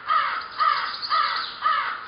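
A crow cawing repeatedly, four caws at about two a second.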